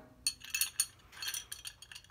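Small metallic clinks and scrapes of an open-end wrench working a brass fitting on a steel burner nozzle tube as it is tightened. The clicks are short and irregular, several a second.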